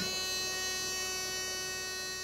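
Oxygen concentrator just switched on, giving a steady high electric buzz with many overtones that eases off slightly.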